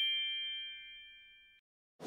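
Bell-like chime notes of a title jingle ringing on and dying away, fading out about a second and a half in, followed by silence.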